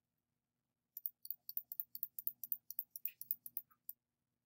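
Computer mouse clicking rapidly, a run of about a dozen quick clicks beginning about a second in, as tools are worked on screen in Photoshop.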